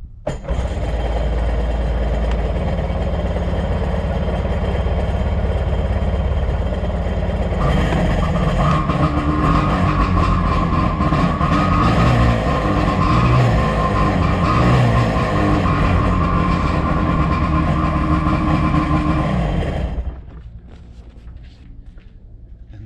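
A personal watercraft (jet ski) engine starting and running out of the water on its trailer. About eight seconds in it gets louder and brighter, and it cuts off suddenly near the end when it is shut off.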